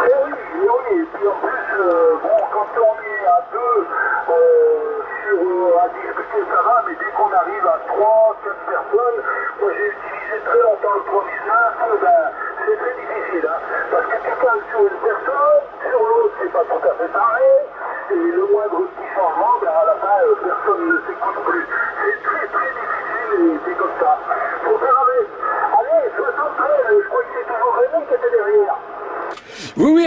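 Another station's voice received over CB radio in upper sideband, played through a Yaesu FT-450AT transceiver's speaker. The voice talks continuously and sounds thin and narrow-band, with background hiss.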